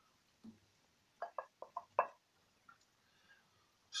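A wooden spatula pushing halved hard-boiled eggs from a glass bowl into a wok of coconut-milk sauce: a faint knock, then a quick run of five or six short clicks and knocks about a second in.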